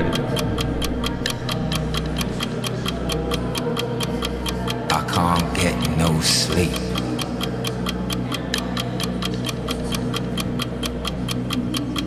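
Soundtrack of a played design-demo video: a fast, steady ticking over sustained low tones, with a short gliding sound about five seconds in.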